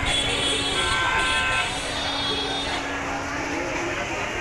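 Vehicle horns honking in street traffic: a horn sounds for about a second and a half near the start, over steady traffic noise.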